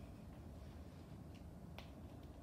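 Quiet room tone with two small sharp clicks, a faint one just past halfway and a sharper one near the end.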